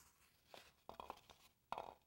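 Near silence with a few faint, short rustles and clicks of plastic drinking straws being picked up and handled, the last one near the end.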